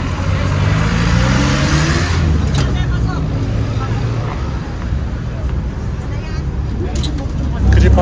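Jeepney's diesel engine accelerating as it pulls away, its pitch rising over the first two seconds under a rush of wind and road noise at the open rear entrance. It then runs steadily, with a louder surge near the end.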